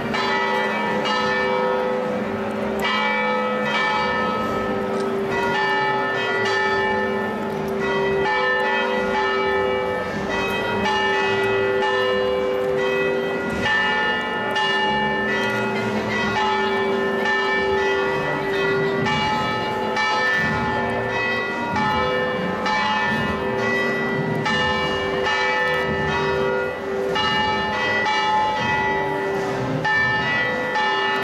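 Church bells ringing continuously, several bells of different pitches struck quickly and repeatedly so that their tones overlap.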